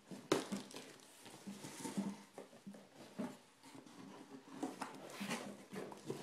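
Cardboard box being opened by hand, its flaps pulled up and its plastic wrapping crinkling: a sharp crackle near the start, then scattered rustles and scrapes that grow busier near the end.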